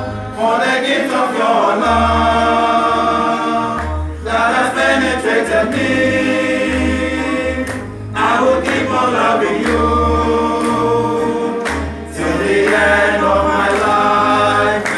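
A choir of friars' men's voices singing a thanksgiving song together, in sustained phrases of about four seconds with brief breaks between them.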